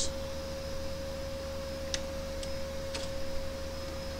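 Steady electrical hum with a faint constant tone in the recording, with three faint keyboard clicks about two to three seconds in, as a method name is typed into a code editor.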